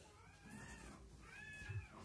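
Faint cat meowing: two drawn-out calls, each rising and then falling in pitch, the second louder.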